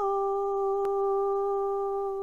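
A woman's unaccompanied voice holding one long, steady note in chanted Mong lug txaj poetry. There is a faint click just under a second in.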